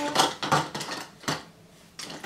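Makeup brushes clinking against each other and their holder cup as one is picked out: a few short clatters in the first second and a half, then quiet.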